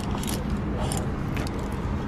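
Handling of a quilted leather purse with a chain strap being set into a stroller: a few light clicks and rustles over a steady low outdoor rumble.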